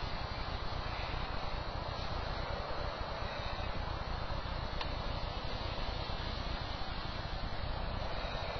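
Steady rushing background noise with no distinct source, strongest in the low end, with one faint click about five seconds in.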